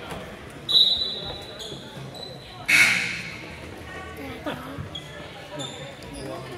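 Basketball gym during a game: a ball bouncing on the court, a few high held squeaks about a second in, and a loud noisy burst near three seconds, over a murmur of spectators' voices echoing in the hall.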